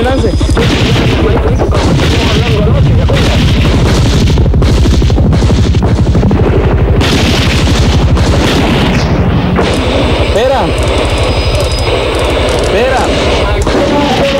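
A firefight: rifle fire and heavy booms, loud throughout.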